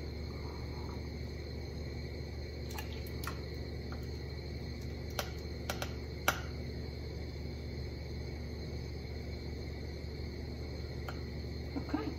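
A metal ladle clicking and tapping faintly against a plastic canning funnel and glass jar as salsa is spooned in, a few scattered taps mostly a few seconds in, over a steady low room hum.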